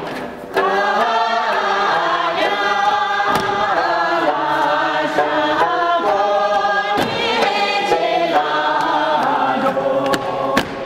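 A group of voices singing together, coming in about half a second in and holding steady, with a few sharp knocks under the singing.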